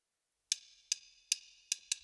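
Drummer's count-in: four evenly spaced sharp clicks, then a quicker fifth, setting the tempo before the band comes in.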